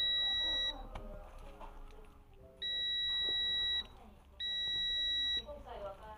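Digital multimeter's continuity beeper sounding a steady high tone three times: the first beep stops under a second in, then two more of about a second each follow. Each beep sounds while the jet ski stop/start switch's contacts are closed, showing the switch conducts.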